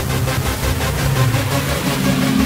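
Electronic intro music with a steady, fast beat over sustained bass notes.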